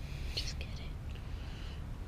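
Faint whispered speech, a few soft hissing syllables about half a second in, over a low steady background rumble.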